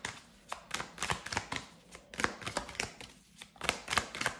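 Tarot cards being shuffled by hand: a run of quick, irregular card flicks and riffles.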